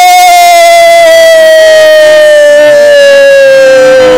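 One long, loud held note from a single pitched source, with a quick upward swoop at the start and then a slow, steady slide down in pitch.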